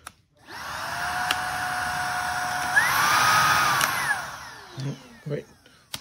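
Shark Vertex DuoClean cordless vacuum motor, running off a wired-in 18-volt Ridgid lithium-ion battery, spins up with a rising whine and runs steadily. Just before halfway it steps up to a higher speed, then it is switched off and winds down. The motor running shows the substitute battery works.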